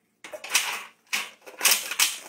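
Pastry brush swept over a raw pie crust, laying on egg wash: three short scratchy swishes.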